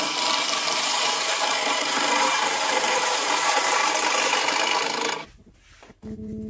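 Wood lathe turning a partly rotten wood blank, a hand-held gouge cutting into the spinning wood with a steady scraping hiss as shavings come off. The cutting cuts off suddenly about five seconds in.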